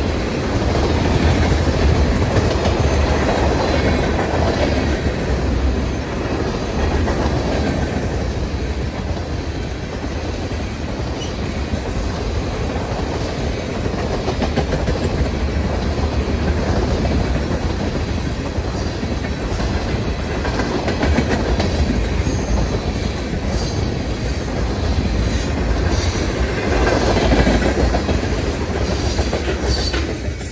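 Freight train of tank cars rolling past, steel wheels clacking over the rail joints in a steady rumble. It swells briefly near the end, then fades as the last car goes by.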